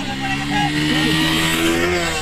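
Motorcycle engines running, with the revs climbing slowly and steadily.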